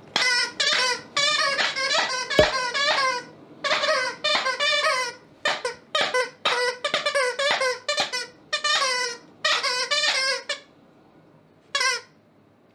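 Plush squeaky toy squeaking over and over in quick bursts as a German Shepherd chews it, stopping about ten and a half seconds in with one last squeak near the end. A single sharp knock about two seconds in.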